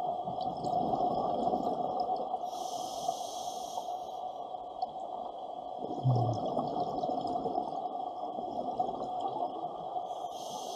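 Scuba breathing through a regulator underwater, close by: a high hiss of an inhalation from about two and a half to four seconds in, over the continuous bubbling rumble of exhaled air. A short low thump about six seconds in.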